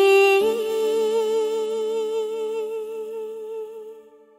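Marathi film song: a voice holds a long note with vibrato over a sustained chord. The note steps up about half a second in, then the sound fades toward the end.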